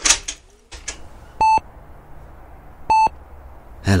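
Hospital patient monitor beeping: two short, identical electronic beeps about a second and a half apart, over a low steady background hum, marking a patient's heartbeat. A brief noise comes right at the start.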